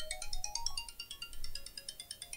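Phone ringtone: a quick, tinkling melody of short high notes in rapid succession.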